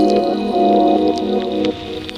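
Ambient electronica: a soft synthesizer chord held in shifting blocks, with a thin high tone gliding slowly downward above it and a few faint clicks. The chord drops away briefly near the end.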